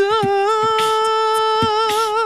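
A tenor holding one long sung note that wavers into vibrato toward the end, over a beatboxed beat of deep kick thuds and hissing snare strokes.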